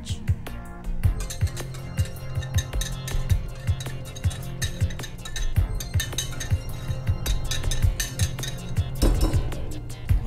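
Repeated glass clinks as a wire whisk taps the small glass bowl and the glass mixing bowl to knock the cornstarch out, over a steady background music bed.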